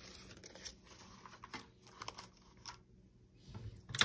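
Faint rustling and crinkling of paper dollar bills being handled, in short scattered crinkles.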